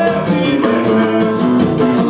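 Live samba played acoustically: guitars strummed to an even beat with hand drums, and men singing together.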